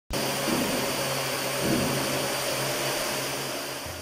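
Small quadcopter drone hovering, its four electric rotors making a steady whirring hum that eases slightly toward the end.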